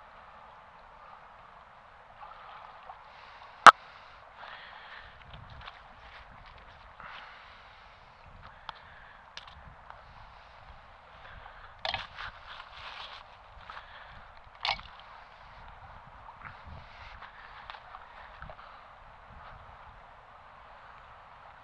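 River current gurgling steadily while a fishing magnet and its rope are hauled out and handled on the bank. One sharp click about four seconds in is the loudest sound, with a few short knocks and rustles around twelve and fifteen seconds.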